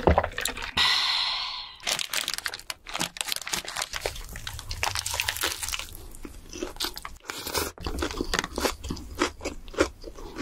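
Close-miked biting and chewing of a burger, with many irregular crunches and wet mouth clicks. About a second in there is a brief hissing noise.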